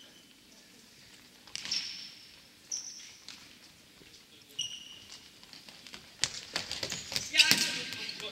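Futsal ball being kicked and bouncing on a wooden gym floor, with a few short high squeaks of indoor shoes on the boards. The knocks come thickest near the end.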